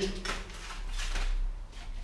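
Plastic packaging of a sticker pack crinkling and rustling as it is handled, in several short bursts.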